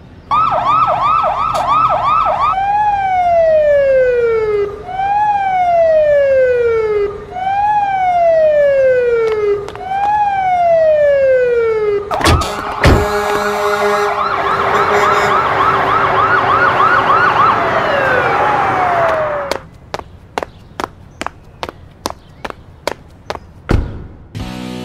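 Ambulance siren: a fast warbling yelp, then four long falling wails about two and a half seconds apart, then the fast warble again with a rushing noise beneath it and one last falling wail. A run of sharp clicks follows near the end.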